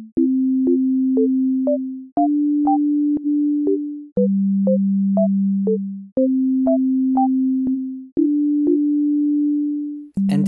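Csound software synthesizer playing a looped chord progression in pure tones. A sustained bass note is restruck every two seconds, stepping to a new pitch with each chord, while short chord-tone notes are picked out above it about twice a second. Each note starts with a faint click.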